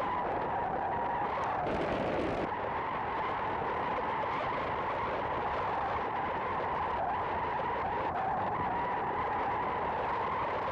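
Steady wind rushing over a camera microphone as a tandem skydiver falls through the air.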